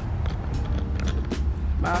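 Low, steady outdoor rumble, with a short spoken "bye" near the end.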